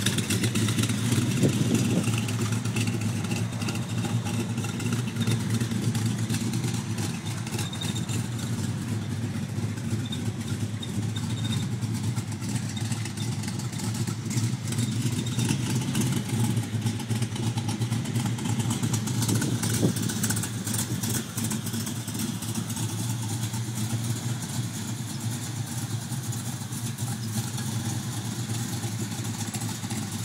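1969 Corvette's 427 big-block V8 idling steadily through its factory side-exhaust pipes, swelling briefly near the start and again about twenty seconds in.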